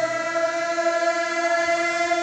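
A group of voices chanting together, holding one long steady note that sounds like a sustained chord.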